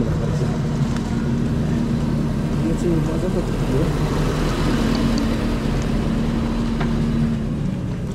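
A steady engine hum, with a faint voice briefly about three seconds in.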